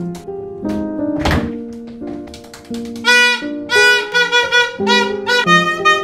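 Background music with held notes and a single heavy thump about a second in. From about three seconds, a plastic toy horn blows a run of short, loud honks over the music.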